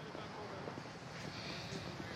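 Quiet outdoor ambience with faint, indistinct background voices.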